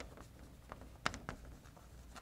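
Chalk writing on a blackboard: faint taps and scratches of the chalk, with the sharpest tap about a second in.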